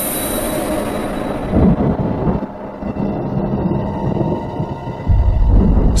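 Background soundtrack music with rumbling sound effects. A deep, loud low rumble comes in near the end.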